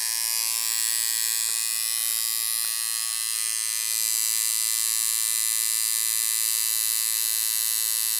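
Electric tattoo machine buzzing steadily as it inks a fine-line tattoo into the skin, a little louder from about halfway through.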